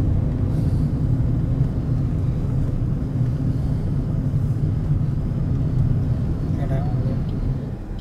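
Car engine running with a steady low rumble, heard from inside the car's cabin.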